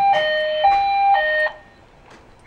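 Building fire alarm sounding for a fire drill, alternating a high and a low tone about twice a second. It cuts off suddenly about one and a half seconds in.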